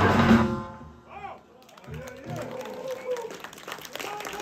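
Live death-grind band with electric guitars and a drum kit playing at full volume, then stopping abruptly about half a second in. The final chord rings out briefly, followed by audience voices and scattered claps.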